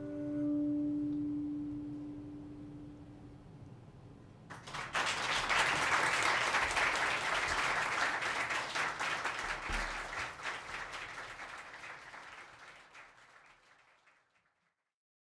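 The last guitar chord of a live song rings and dies away, then audience applause breaks out about four and a half seconds in and fades out near the end.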